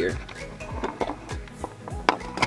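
Background music with a beat over sustained tones.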